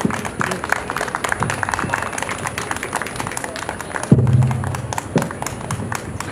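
Audience applauding after a poem, many hands clapping. About four seconds in there is a sudden loud low thump that lasts under a second.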